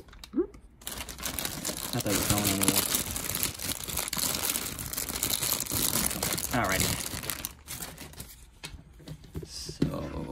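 Thin clear plastic bags crinkling and rustling as hands unwrap the parts of a PVC dragon figure. The crinkling starts about a second in and thins out near the end.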